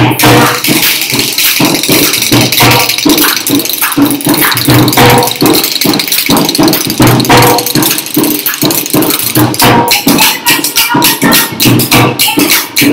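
Rajasthani dhol and khartals playing together in a fast, driving rhythm: deep drum strokes recurring under the rapid clacking of the khartals.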